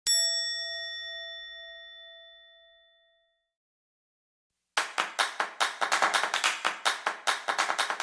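Editing sound effects: a single bell-like ding that rings and fades away over about three seconds. After a short silence comes a fast, even run of ticks, about five a second, a film-countdown sound effect.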